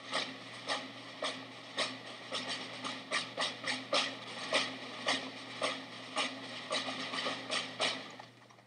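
Irregular sharp clacks and taps, about two to four a second, over a low steady hum.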